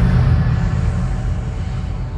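Deep bass boom from a logo intro's sound design. It hits right at the start, and its low rumble slowly dies away.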